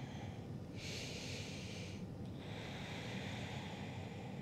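A woman breathing slowly and faintly: one long breath starting about a second in, then a second, softer one just after the midpoint, over a low hum of room tone.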